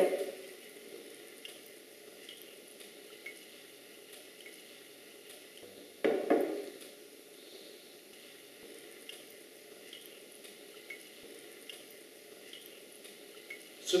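Faint fizzing and crackling of iron powder reacting in hydrochloric acid, with small ticks from bubbles of hydrogen. A glass flask knocks down on the table about six seconds in.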